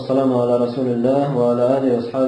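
A man's voice chanting in a drawn-out, melodic way with long held notes: the opening invocation of praise that begins a religious lesson.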